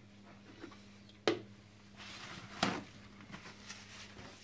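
Handling a plastic citrus juicer on a kitchen counter: a sharp click about a second in, then scraping and a knock around the middle, over a steady low hum.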